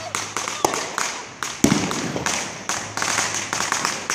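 Firecrackers and fireworks going off: a rapid, irregular string of sharp pops and cracks, with a louder bang about half a second in and another about a second and a half in.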